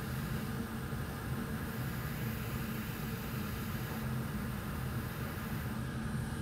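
Steady low hum with a hiss over it and no distinct sounds standing out: background room tone.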